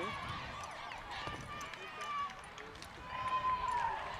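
Faint, indistinct voices of players and the referee talking on the field, with scattered small clicks. Near the end there is a single held tone that slowly falls.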